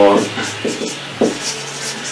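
Marker pen scraping across a whiteboard as a word is written, in several short scratchy strokes.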